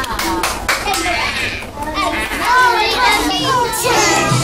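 A crowd of young children chattering and calling out all at once, many high voices overlapping.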